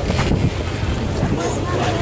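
Wind buffeting the microphone over a steady low rumble, with fragments of crowd chatter.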